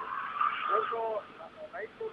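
A vehicle going by in the street, with a steady high tone for the first second, under a man's short fragments of speech.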